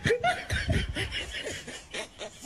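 A person laughing in rapid, repeated bursts.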